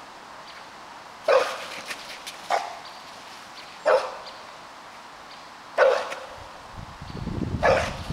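A dog barking at a stick-wielding helper in protection (defence) training: five single, sharp barks a second or two apart.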